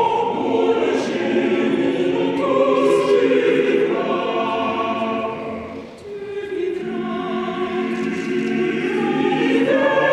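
A choir singing a national anthem in long held phrases. A short break between phrases comes about six seconds in.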